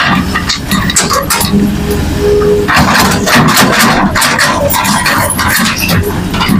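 Hitachi hydraulic excavator working a pile of soil and rocks: its diesel engine runs steadily, a brief whine is heard about two seconds in, and from about three seconds in there is a rough, dense clatter and scrape of rocks and earth.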